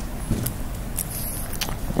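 Steady low rumble and hiss of room and microphone background noise, with a few faint short clicks spread through it.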